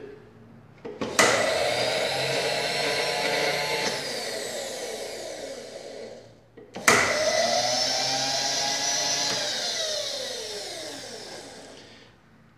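Mill table power feed motor running twice. Each time it starts with a click and a steady whine, then falls in pitch and fades as the speed knob is turned down. The first run starts about a second in and the second near seven seconds.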